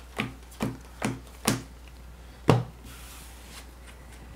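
Playing cards laid down one by one onto a tabletop: four quick card snaps about half a second apart, then a fifth, louder one about a second later.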